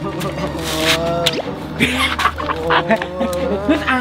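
A person's drawn-out, wavering cries without words, over background music with a steady low tone.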